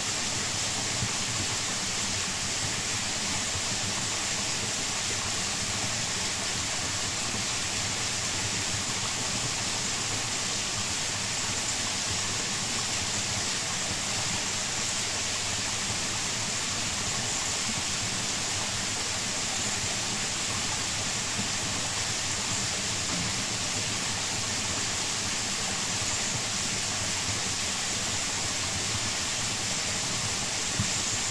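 Waterfall falling steadily, an even rush of water.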